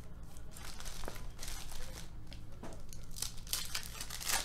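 Foil trading-card pack wrapper being torn open and crinkled by hand, in irregular crackles.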